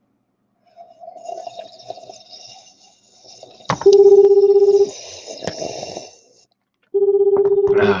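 Ringback tone of an outgoing phone call: a loud steady low tone about a second long, heard twice about three seconds apart. Before it comes a couple of seconds of softer hissy noise.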